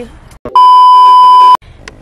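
A loud, steady electronic bleep at one high pitch, about a second long, starting about half a second in and cutting off abruptly.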